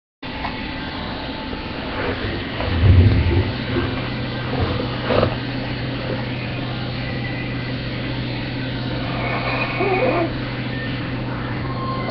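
Steady low hum and hiss from a webcam's built-in microphone, with a loud dull bump about three seconds in and a sharp click about two seconds later as a dog is handled and lifted up close to it.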